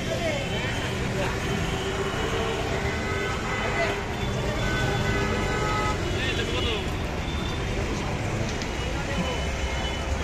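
Busy street ambience: steady traffic noise under people's voices talking.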